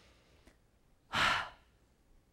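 A woman's single audible breath, about half a second long, a little past halfway through.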